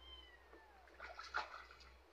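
Wet kitten meowing once, a single cry that falls in pitch, then water splashing in the plastic tub as it is washed, loudest about halfway through.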